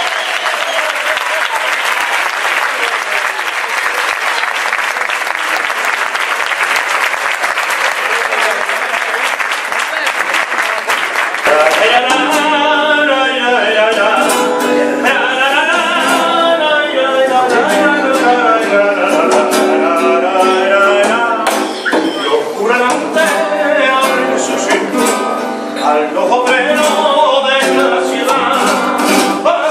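Audience applauding and cheering for about eleven seconds, then a group of voices begins singing a carnival song to strummed Spanish guitar, which carries on to the end.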